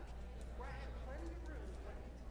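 Faint, indistinct chatter of a few people in a large hall, over a steady low hum, with a few light clicks.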